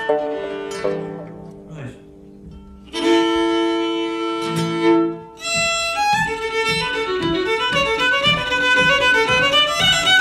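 Solo fiddle. After a few scattered plucked and held notes, it breaks into a fast Irish reel about six seconds in: a quick, even stream of bowed notes.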